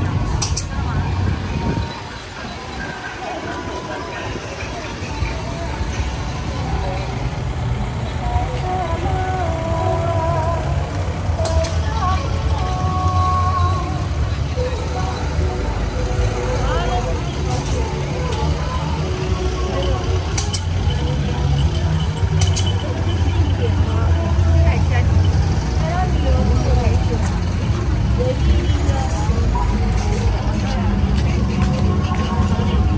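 Outdoor street ambience: voices of people talking over a steady low rumble of vehicles, with faint music and a few short clicks.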